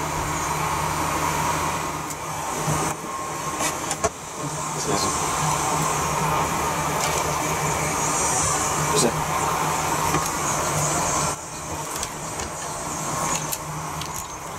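A steady droning hum with a few light clicks and knocks as cut honeycomb is handled and pressed into a wooden hive frame strung with rubber bands. The hum dips briefly twice.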